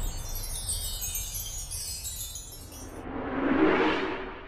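Logo-animation sound effect: a shimmer of chime-like tinkling that falls in pitch over about three seconds, then a whoosh swelling up near the end.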